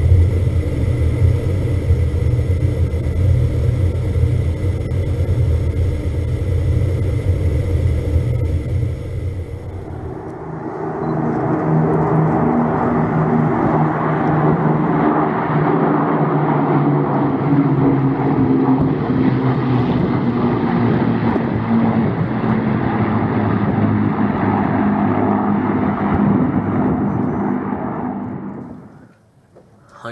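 Avro Lancaster's Rolls-Royce Merlin engines running steadily, first heard from inside the rear gun turret in flight as a deep steady rumble. About ten seconds in, the sound changes to the engines heard from the ground as Lancasters fly over, fading out near the end.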